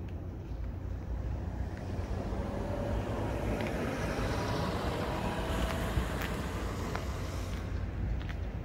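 Road traffic: a vehicle going past, its sound building to a peak around the middle and fading away near the end, over a steady low rumble.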